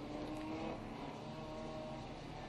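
A pack of four-cylinder mini stock race cars heard from a distance, rolling at pace speed before the start: a faint, steady engine drone that rises a little in pitch in the first second.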